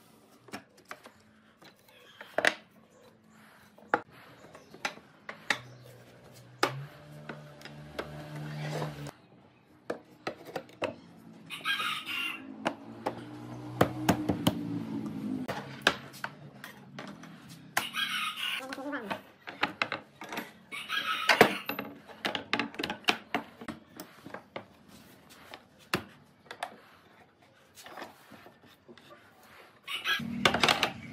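Scattered wooden taps and knocks as solid-wood raised panels and rails are slotted into a cabinet door frame and pressed together, with voices and a rooster crowing in the background.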